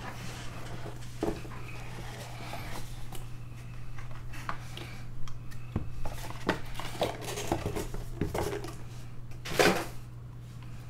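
A Leaf Metal Draft Football cardboard card box being handled: scattered taps, scrapes and crinkles, with a louder rustle just before the end. A steady low electrical hum runs underneath.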